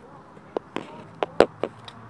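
A series of sharp, irregular knocks or taps, about six in two seconds, the loudest about a second and a half in.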